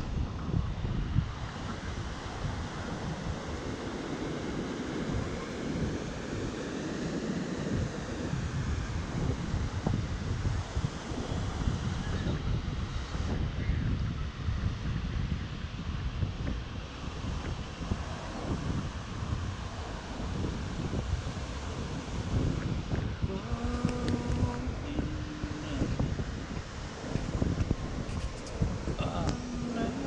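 Wind buffeting the microphone over the steady wash of strong surf breaking on a sandy beach. Near the end a short pitched sound, held for about two seconds, cuts through.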